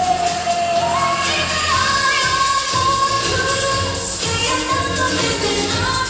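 Cha cha dance music with a singer holding long notes.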